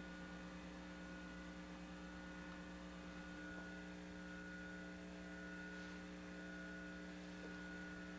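Faint, steady electrical mains hum with a few constant tones over light hiss.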